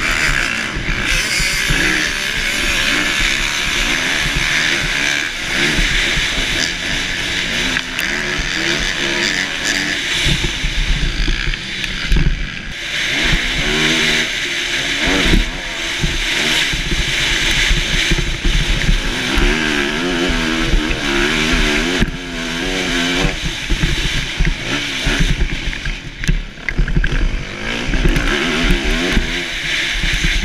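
Motocross bike engine ridden hard, revving up and dropping back again and again as it is shifted through the gears and throttled in and out of turns. Wind rushes over the helmet-mounted microphone.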